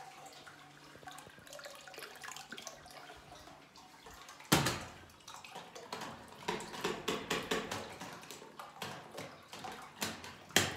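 Hotel toilet with a concealed cistern that keeps running, water trickling into the bowl from a leaking cistern. About four and a half seconds in there is a sharp clack, and from about six and a half seconds there are water sounds and clicks as the wall flush plate is pressed and worked.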